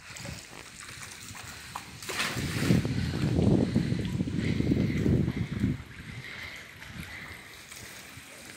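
River water splashing and rushing around a bamboo raft, swelling to a louder rush about two seconds in and easing off near six seconds.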